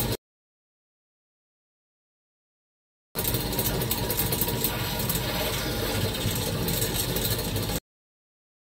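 Hoverboard hub motor spun by exercise-bike pedals to about 1000 rpm with no load, running fast with a steady, loud mechanical noise, described as screaming; the motor is on the way out. The sound cuts in abruptly about three seconds in after silence and stops suddenly just before the end.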